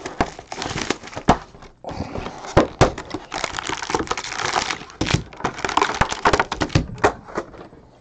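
Cardboard card box being opened by hand and its plastic-wrapped packs lifted out: irregular crinkling and crackling with sharp little snaps and taps.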